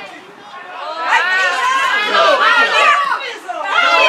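Several people's voices shouting and calling over one another, louder from about a second in.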